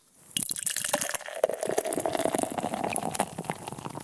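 Liquid pouring into a glass, starting about a third of a second in, with a dense fizzing crackle throughout and a steady filling tone through the middle that fades toward the end.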